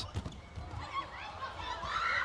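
Sounds of an indoor volleyball rally: a couple of sharp ball strikes just after the start, then players moving on the court over a background of crowd noise.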